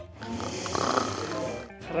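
A sleeping person snoring: one drawn-out snore about a second and a half long, with faint background music beneath.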